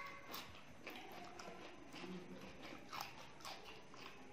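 Close-miked eating sounds: chewing and lip smacks as rice and chickpeas are eaten by hand, with sharp wet clicks scattered irregularly through.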